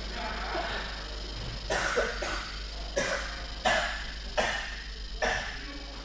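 A person coughing, a run of about six short coughs less than a second apart that begins a little under two seconds in.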